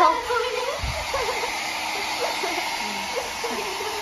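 Handheld electric hair dryer blowing steadily, with voices talking over it.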